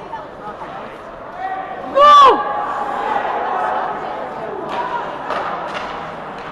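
A spectator's short shout, rising then falling in pitch, about two seconds in, over the hum of voices in an ice rink. A few sharp clacks near the end.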